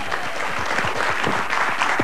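Studio audience applauding, a dense, steady clapping with faint voices underneath.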